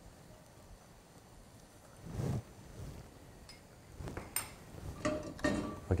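Cookware and utensils being handled on a kitchen counter as cooking begins. A soft brushing noise comes about two seconds in, then a few light knocks and clinks near the end.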